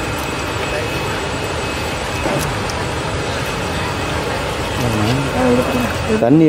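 A steady, even drone like a running engine, with a faint high whine held throughout.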